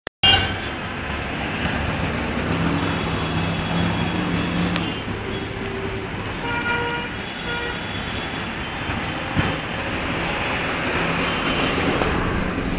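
Steady road traffic noise from engines of passing vehicles on a busy street, with a few brief tones sounding over it.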